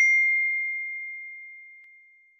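Notification-bell 'ding' sound effect, struck once as the bell icon is clicked: a single high ringing tone that fades away steadily over about two seconds.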